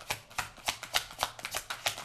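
A deck of tarot cards being shuffled by hand: a quick, irregular run of card clicks, about six a second.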